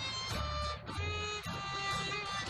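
A fiddle playing a lively tune, backed by strummed acoustic guitars and an upright bass plucking low notes.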